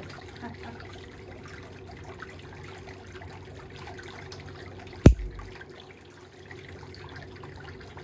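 Faint scraping and picking of a metal ingrown sidewall cleaner working compacted buildup out of a thick toenail, over a steady low hum. One sharp knock about five seconds in.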